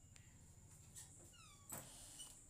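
Near silence with a faint steady hum, broken about one and a half seconds in by a single short high squeak that falls in pitch, followed by a faint click.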